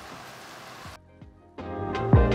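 Water spinach and garlic sizzling in a frying pan, cut off abruptly about a second in; after a short silence, background music with a beat starts up.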